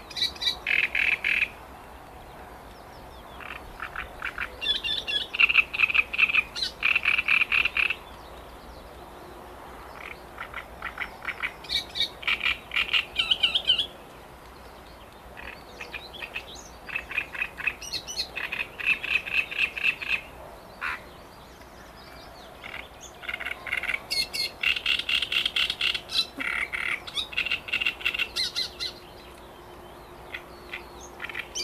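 Great reed warbler singing: about five phrases of rapid repeated notes, each lasting a few seconds, with short pauses between.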